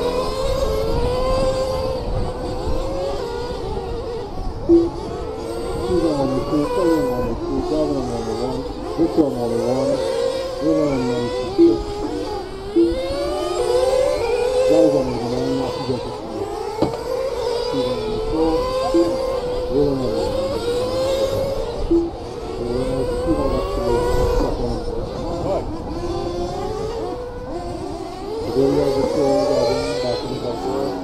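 Several nitro-powered RC race cars lapping together, their small engines repeatedly revving up and dropping back in overlapping high-pitched whines as they accelerate and brake through the corners.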